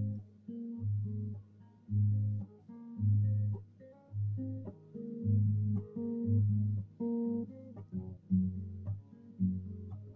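Baritone guitar played fingerstyle: a plucked bass note about once a second under a line of higher melody notes.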